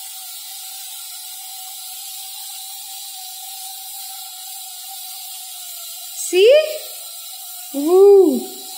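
Steam jetting steadily from a pressure cooker's vent: a continuous whistling tone over a hiss. About six seconds in, a short rising vocal sound from a person.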